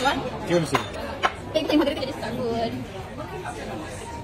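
Chatter of several voices in a busy room, with two sharp clicks within the first second and a half.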